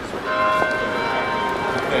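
A bell struck once about a quarter second in, its several steady tones ringing on and slowly fading.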